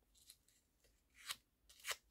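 Paper flower petals being handled and curled against a bone folder: mostly near silence, with two brief, faint papery scrapes in the last second.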